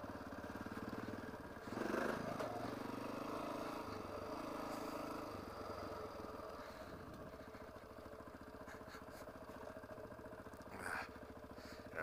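Dual-sport motorcycle engine running at low speed on a dirt trail, heard from the rider's helmet. The throttle opens about two seconds in, then eases back to a quieter steady run for the rest of the stretch.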